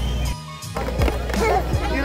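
Background music track with a steady drum beat, cutting out for a moment about half a second in and then carrying on.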